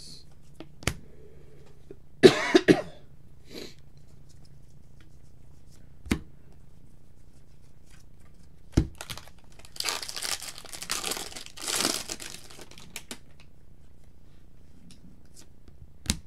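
A person coughs twice, sharply, a couple of seconds in. Later a few light clicks follow, and then, from about ten seconds in, the foil wrapper of a trading-card pack crinkles and tears as it is opened.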